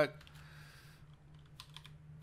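Typing on a computer keyboard: a few quick keystrokes starting about a second in, over a faint steady low hum.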